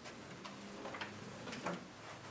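A few light clicks and knocks, about half a second apart and the loudest near the end: a person handling papers and settling at a meeting-room table.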